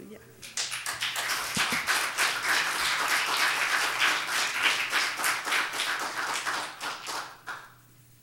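Congregation applauding: a few seconds of dense clapping from a small crowd that dies away near the end.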